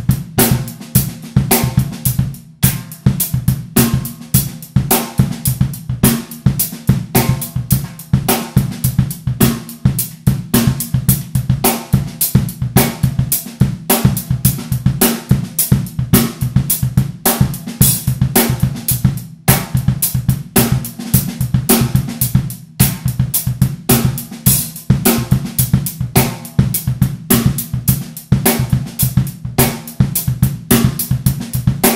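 Drum kit played in a steady funk groove: the bass drum kicks out the syncopated rhythms of a foot-strengthening exercise while sticks play along on the cymbals and snare. There are a few brief breaks in the playing.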